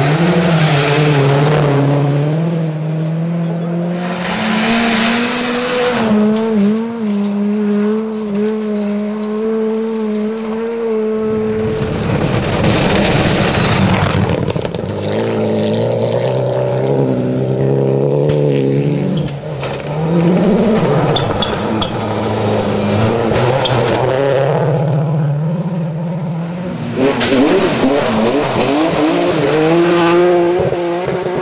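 Rally cars driven flat out on gravel stages, one after another. The engines rev hard and shift up and down in pitch through gear changes, and each close pass brings a loud rush of tyre and gravel noise.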